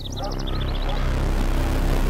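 A low rumbling soundtrack drone swells in over the first second, then holds steady with a hiss above it. It opens a dark film score. A few faint bird chirps fade out near the start.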